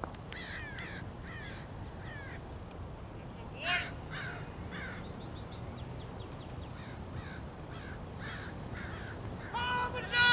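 Crows cawing repeatedly, a string of short falling calls with one louder caw a few seconds in, over a steady low background rumble. Near the end, cricket fielders start shouting loudly.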